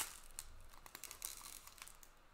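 Faint crinkling of foil trading-card pack wrappers and cards being handled, with a few light ticks.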